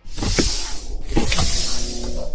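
Cinematic title sound effect starting suddenly: a loud rushing whoosh over a low rumble, with two falling sweeps, one about half a second in and one a little past a second.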